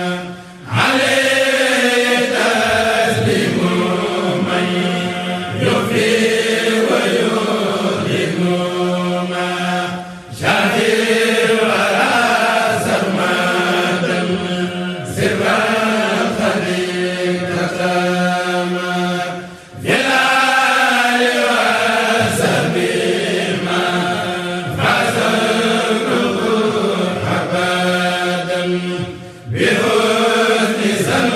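A group of men chanting a Mouride khassida in Arabic without instruments, in long melodic phrases of about ten seconds each with short breaks for breath, over a steady low held note.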